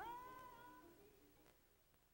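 A single faint high sung note that slides up, is held, and fades away over about a second and a half, followed by near silence.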